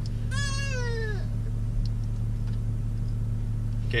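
A young child in the back seat gives one short, high, drawn-out cry that slides down in pitch, lasting about a second near the start. Under it runs the steady low hum of the idling car.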